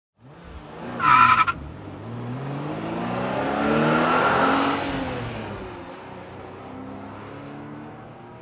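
A car: a brief tyre screech about a second in, then an engine revving up, swelling in loudness and pitch to a peak near the middle and fading away.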